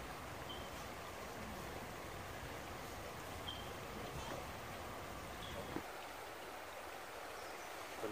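Shallow river flowing over rocks: a steady, faint wash of water. A few faint short high chirps sound over it, and a low rumble underneath drops away about six seconds in.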